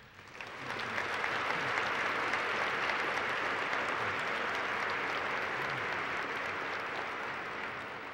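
Audience applause that swells up about half a second in, holds steady, and tapers off near the end.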